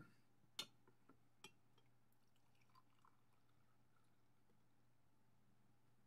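Near silence with a faint steady low hum. Two faint clicks of glassware come about half a second and a second and a half in, as brewed coffee is poured from a glass beaker into a glass mug.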